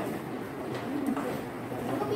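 Low, indistinct chatter of several people talking among themselves at once.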